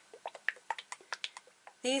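About eight light, irregular clicks and taps of small objects being handled on a tabletop.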